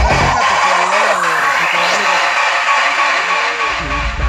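Psytrance breakdown over a loud sound system: the kick drum and bass drop out, a rising sweep climbs over a bright wash of synth, and warbling pitched tones wander underneath. The kick and bass come back in just before the end.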